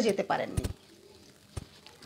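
Two short, muffled knocks about a second apart from a wired earphone's inline microphone being brushed by hands and clothing, after a final spoken word.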